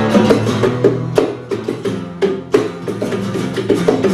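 Acoustic guitars strumming chords in an instrumental passage of a live song, with several sharp accented strokes about a second apart.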